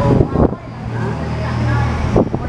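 A man's voice in the first half second, then a steady low motor hum.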